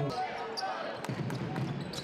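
Basketball arena crowd murmur, with a few short knocks and squeaks from play on the hardwood court.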